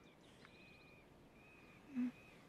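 Near silence with faint bird calls: a few thin whistled notes, each held about half a second. Right at the end, a brief low murmur from a person during a kiss, the loudest sound here.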